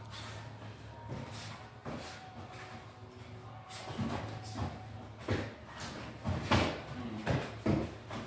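Sparring in protective gear: feet shuffling and stepping on the floor, and padded punches and kicks landing on foam chest protectors as a series of short thuds, more frequent over the second half.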